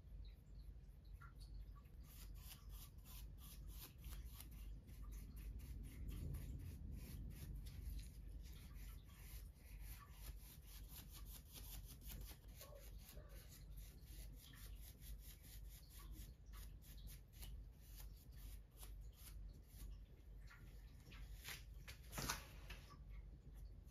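Faint, quick, repeated strokes of a paintbrush's bristles brushing paint onto a wooden table leg, over a low steady hum, with one louder click near the end.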